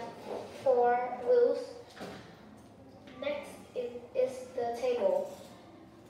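Only speech: a child's voice in two short, halting phrases with a pause between.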